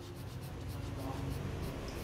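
Graphite pencil hatching on drawing paper: quick, evenly repeated back-and-forth shading strokes, several a second, laying in the darker tone of a shadow plane. A low, steady rumble lies underneath.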